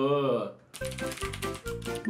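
Rapid clicking of computer-keyboard typing over a steady background music track, after a drawn-out wavering voice trails off in the first half second.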